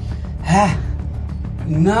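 Background music with a steady low bass. About half a second in, a man gives one short gasp, and a man's speech begins near the end.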